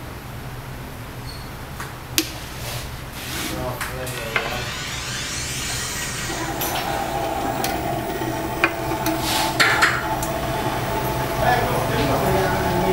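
Sharp clicks and knocks as a phone is handled and clamped into a screen-glass cutting machine. About halfway through, the machine's small motor starts and runs with a steady hum, with a few more knocks over it.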